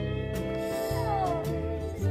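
Background slide-guitar music, with a kitten meowing once about a second in: a short call falling in pitch.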